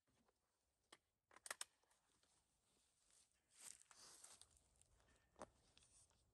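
Near silence with a few faint clicks: one about a second in, two close together soon after, and one near the end, with a short soft rustle in the middle.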